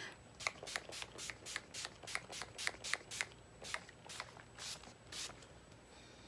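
Pump-mist bottle of Skindinavia makeup finishing spray spritzed onto the face again and again: about sixteen short hisses, quick at first (about four a second), then slowing and stopping a little after five seconds.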